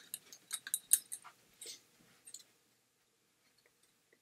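Steel-tip darts pulled out of a bristle dartboard and clicking against each other in the hand: a quick run of light, sharp clicks over the first two seconds or so.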